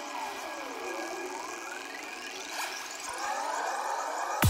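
Psychedelic trance breakdown with the kick drum and bass dropped out. Layered electronic synth tones sweep down in pitch about a second in, then rise steadily.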